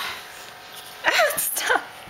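Small Havanese-poodle dog vocalising during play: two short calls about a second in, each falling in pitch, with a breathy, sneeze-like burst.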